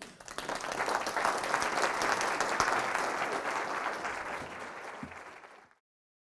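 Audience applauding, building within the first second and tapering off before cutting off suddenly near the end.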